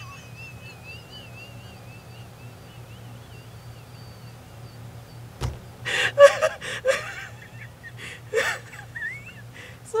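A woman's uncontrollable laughter. It starts as a thin, high, wavering squeal held for about four seconds. After a sharp click midway come loud bursts of laughter about six seconds in and again near the end.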